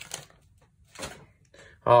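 A small stack of 1987 Topps baseball cards being handled in the hands: two short rustles of the cards sliding against each other, about a second apart.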